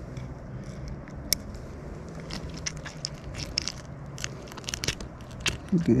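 Scattered small clicks and scrapes of long metal forceps working a hook out of a trout's mouth.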